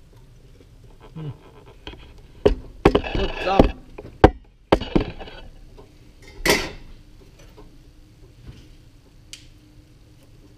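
Handling noise: a cluster of sharp knocks and rubbing for a couple of seconds as the camera is picked up, moved and set down pointing into the popcorn pot, then one more louder scuffing knock as it is settled. A short hummed "Mm" comes just before.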